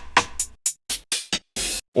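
Electronic drum sounds from an Ableton Live drum rack, finger-drummed on the pads of a Novation Launchkey Mini mk3: a quick run of short hits about four a second, ending with one longer, hissier hit near the end.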